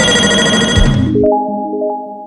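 Synthesized intro-jingle sound effect: a bright chord that sweeps down in pitch over a low rumble, cutting off about a second in, followed by softer, ringtone-like synth tones that fade away.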